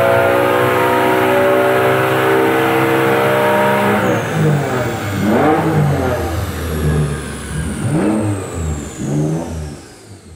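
1992 Dodge Stealth Twin Turbo's 3.0-litre V6 at wide-open throttle on a chassis dyno, pulling high in the rev range (about 7,300 rpm) on wastegate-spring boost, its pitch climbing slowly. About four seconds in the throttle closes and the engine drops into an uneven, burbling coast-down, with a faint high whine falling away as it slows.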